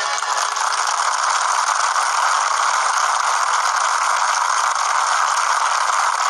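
A studio audience applauding steadily, a dense even clatter that starts as the song's last note ends.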